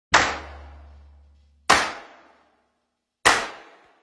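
Three sharp percussive hits from an intro soundtrack, evenly spaced about a second and a half apart, each ringing out briefly; a low bass tone sounds under the first hit.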